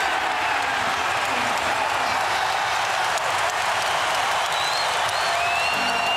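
Basketball arena crowd cheering and applauding after a home-team basket, a loud steady roar. A high whistle sounds near the end.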